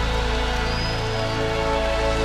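Live band playing an instrumental passage without vocals: held chords over a steady low bass note.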